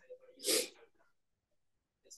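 A single short, breathy burst from a person about half a second in, like a quick exhale or stifled sneeze, with faint breath sounds around it.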